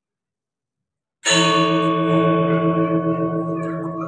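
Silence, then a little over a second in a Balinese gong kebyar gamelan of bronze metallophones and gongs strikes together in one loud stroke that rings on with many overlapping tones, slowly fading.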